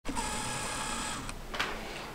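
A camera's lens autofocus motor whirring steadily for just over a second as the lens hunts for focus, followed by a faint short tick.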